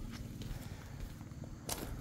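Faint footsteps with small handling rustles, and one louder scuff near the end.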